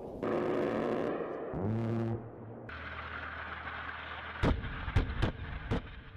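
Spliced combat sounds: a blast goes off at the start and is followed by rumbling noise with a brief rising hum around two seconds. Four sharp reports come in the last second and a half.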